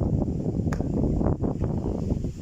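Wind buffeting the phone's microphone, a loud, gusty low rumble with a few sharp knocks in it.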